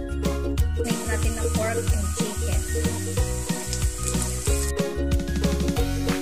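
Background music with a steady beat. About a second in, a loud sizzle of soy-marinated pork and chicken frying in a hot wok with sautéed onion and garlic comes in over the music and cuts off suddenly near the five-second mark.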